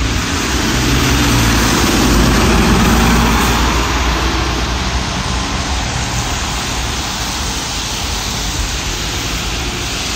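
New Flyer XD40 diesel bus pulling away and passing close by. Its engine grows loudest about two to three seconds in, then fades as it drives off, with tyre hiss on the wet road.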